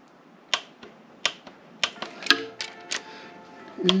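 Sharp metallic clicks, about seven of them, irregularly spaced, from a wrench and socket on the connecting-rod bolts of a 347 stroker small-block Ford. The rod bolts are being tightened to a very high torque.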